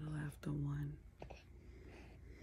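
A woman's quiet voice making two short, steady-pitched sounds in the first second, then a couple of faint clicks.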